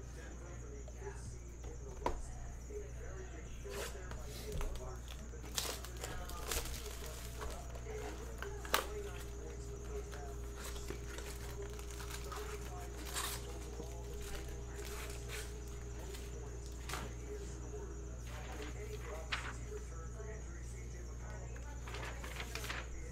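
A cardboard blaster box of baseball cards being handled and opened, with its foil packs set down: scattered sharp clicks, taps and crinkles, over a low steady hum.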